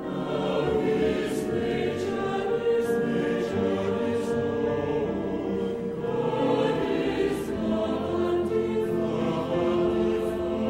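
A choir singing, holding sustained chords.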